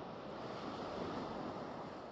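Ocean surf washing in, swelling about a second in and then easing off.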